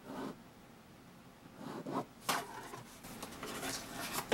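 Quiet, short scratching strokes of a pen tracing along a plastic ruler on freezer paper, with a sharper stroke past the middle and lighter rubbing as the ruler and paper sheet are shifted by hand.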